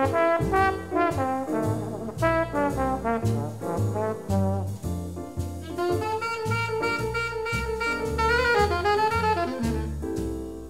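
Mid-1950s jazz octet: trumpet, trombone and saxophones play a written ensemble line over walking string bass and drums. About six seconds in the horns settle into a long held chord, which wavers near the end before the line moves on.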